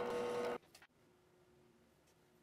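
Drill press motor running as the bit cuts a hole in a brass guard blank, a steady whine that cuts off about half a second in, leaving a faint hum.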